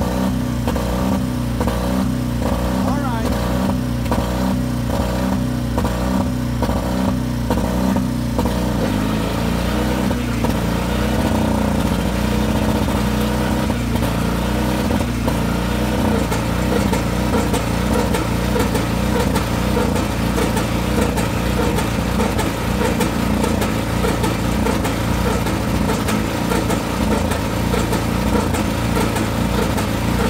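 The Model R's two-cylinder, horizontally opposed pony motor is running and cranking the big two-cylinder diesel while oil pressure builds, with a slow, even beat of one to two strokes a second. About nine seconds in, the beat changes to a denser, steadier running sound.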